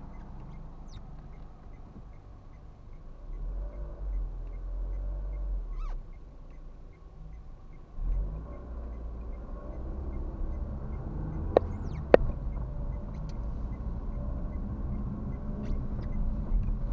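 Car interior engine and road rumble picked up by a dashcam: a low idle while stopped, then a stronger rumble from about halfway as the car pulls away and drives on. Two sharp clicks sound in quick succession in the second half.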